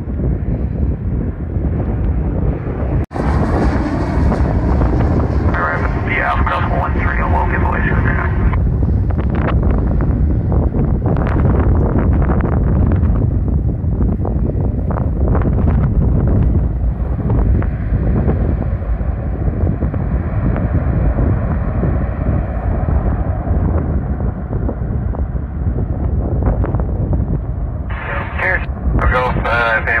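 Strong wind buffeting the microphone, a steady, loud low rumble, cut off briefly by an edit about three seconds in. Near the end a radio voice comes in.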